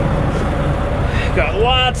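Semi truck's diesel engine idling with a steady low rumble, and a man starts talking over it about halfway through.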